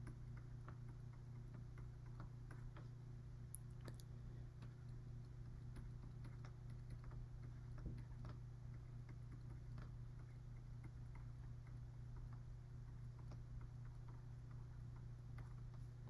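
Faint, irregular light ticks and taps of a stylus on a tablet screen during handwriting, over a steady low electrical hum.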